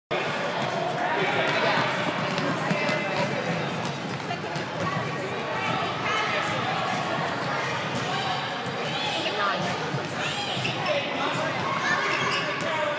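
A basketball bouncing on a hardwood court during a game, with players' and spectators' voices echoing through a large gym.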